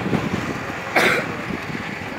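Busy roadside market background: traffic noise and a murmur of distant voices, with one short, sharp noise about a second in.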